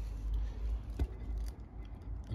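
Low rumble of handling noise with one sharp click about a second in.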